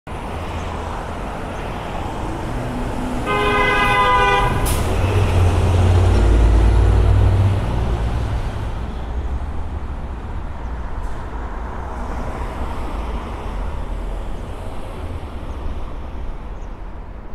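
Downtown street traffic noise with a vehicle horn sounding once for about a second, a few seconds in. A deep rumble swells just after the horn and fades by about eight seconds.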